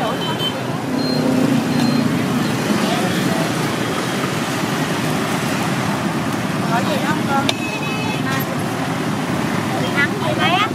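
Steady road traffic noise with voices talking in the background and a short high toot about a second in.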